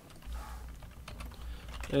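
Faint clicks of keys typed on a computer keyboard, over a low rumble.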